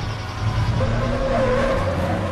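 A vehicle engine running hard with tyres skidding, a squeal about a second in, over a heavy low rumble.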